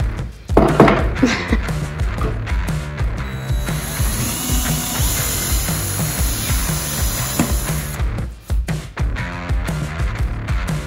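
Background music with a steady beat, over which a cordless drill runs for a few seconds in the middle, boring a cabinet-hardware hole through a drilling jig into a wooden drawer front.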